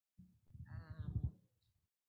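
A person's voice making one drawn-out, wavering vocal sound about a second long, picked up through a room microphone.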